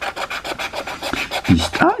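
Scratch-off coating of an FDJ 'Route des Vacances' lottery ticket being scratched away in quick, even strokes, about ten a second.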